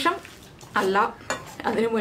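Metal spoon scraping and clinking against a stainless steel bowl while mixing a thick, coarse-ground dal dough for parippu vada.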